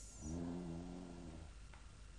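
A faint high hiss fading out, then a man's low, steady hum held for about a second and a half.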